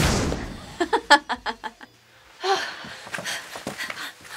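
A quick run of short laughs, then after a brief pause, heavy panting breath.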